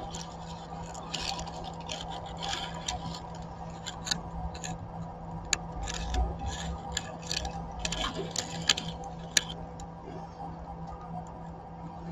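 Scratchy rubbing and sharp clicks of handling noise as the camera shifts against the dry grass lining of a robin's nest, over a steady electrical hum. The scrapes and clicks come in a cluster through the middle.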